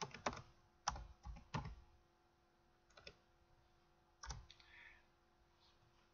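A few faint computer keyboard keystrokes, typed one at a time with pauses: several in the first two seconds, then single taps around three and four seconds in.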